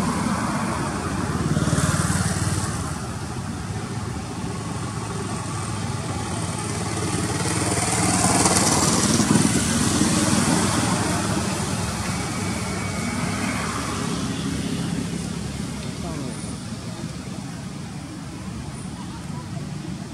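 Road traffic: vehicles passing on the road, the noise swelling about two seconds in and again, longer, from about eight to eleven seconds in, over a steady background rumble.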